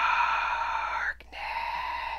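Horror film soundtrack: two long, high held sounds, the first about a second long and louder, the second quieter after a short break. Whether they are a woman's scream or eerie notes of the score can't be told.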